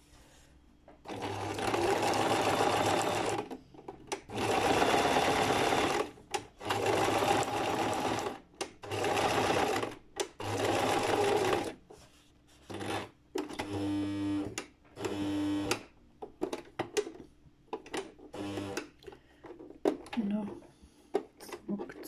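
Domestic sewing machine stitching a zigzag seam in several stop-start runs of a second or two each, with short pauses between. Past the middle the runs get shorter and slower, then only brief spurts.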